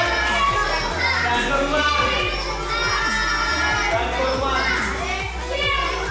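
Children shouting in a large hall over background music with a bass line.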